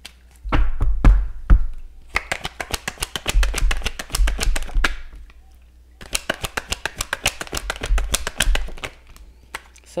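A tarot deck being hand-shuffled: a few thumps near the start, then two bouts of rapid card clicks with a brief pause between them.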